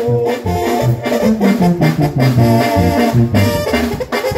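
Live band playing an instrumental break in a corrido: a held lead melody over keyboards, a steady pulsing bass and drums.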